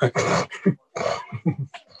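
A man laughing in a run of short, breathy bursts that trail off near the end.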